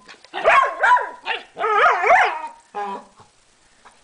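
A young dog giving a quick string of high-pitched yapping barks and yelps in a play squabble with an older dog over a toy, stopping about three seconds in.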